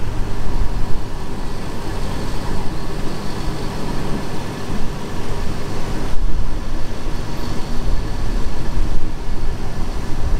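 Passenger train running along the track, heard from an open coach window: a loud, steady rumble of wheels on rails mixed with rushing air.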